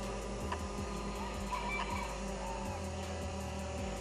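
Steady mechanical hum made of several held tones, unchanging throughout.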